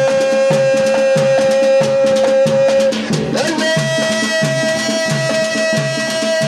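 Amplified dance music with a steady drum beat, about two beats a second. Over it, a long held note stops about halfway through, and a slightly higher held note takes over soon after.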